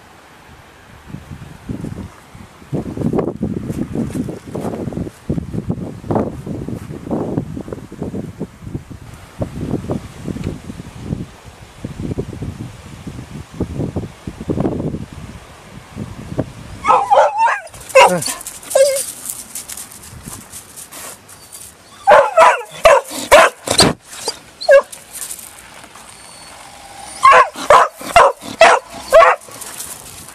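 Border collie barking and yipping in three rapid bursts of short, high barks in the second half, excited at her owner's car arriving home.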